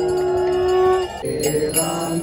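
A conch shell (shankha) blown in one long, steady note that cuts off about a second in, after which chanting and music take over.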